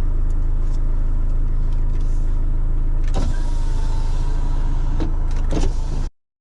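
Car engine idling, heard from inside the cabin: a steady low hum, with a few sharp clicks about three seconds in and again near the end.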